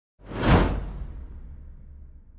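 Whoosh transition sound effect: a sudden rushing swish that peaks about half a second in, then fades into a low rumble that dies away slowly.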